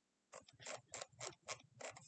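Faint run of about six sharp computer mouse clicks, roughly four a second, starting a moment in, as the on-screen map is zoomed out.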